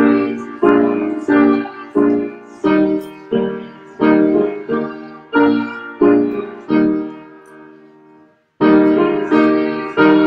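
Piano playing a hymn in block chords, about three chords every two seconds, each struck and decaying. Near the end of a phrase one chord is held and fades out, and after a brief silence at about eight and a half seconds the next phrase begins.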